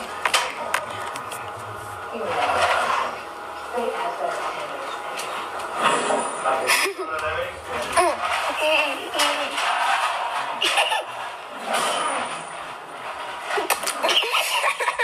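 A throat clears twice, then voices from played-back home-video clips carry on, with scattered knocks and clatter.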